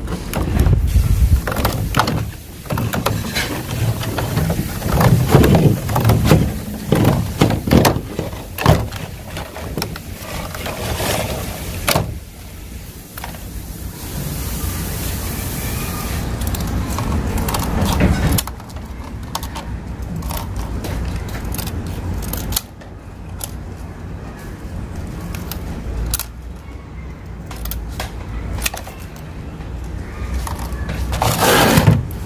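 Scissors snipping through a thin clear plastic food container, with the plastic crackling as it is handled: a quick run of snips and crinkles through the first dozen seconds, then sparser clicks. A low steady rumble lies underneath.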